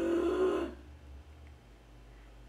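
A short wordless vocal exclamation, an 'ooh'-like sound rising slightly in pitch and lasting under a second at the start; after it, only faint clicks.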